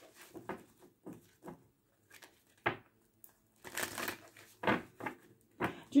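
A deck of cards being shuffled and handled by hand: a run of short, irregular papery swishes and snaps, busiest a little past the middle.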